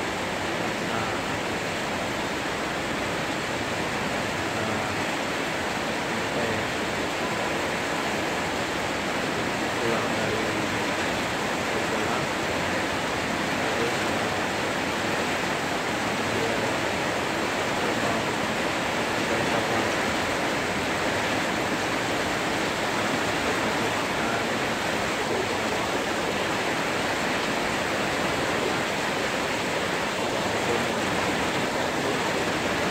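Heavy rain pouring steadily onto corrugated metal roofs, a dense, even hiss that holds without a break.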